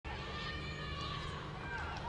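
Pitch-side sound of a football match: scattered high-pitched shouts and calls from players and spectators over a steady low stadium rumble.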